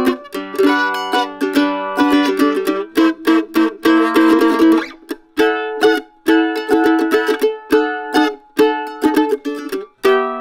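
Gatti F-style mandolin played with a flatpick: a melody of single picked notes, with a stretch of rapid tremolo picking around the middle and short gaps between phrases.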